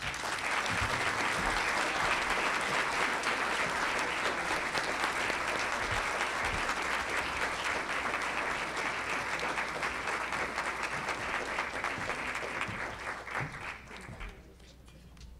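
Audience applauding: many people clapping steadily, fading out near the end.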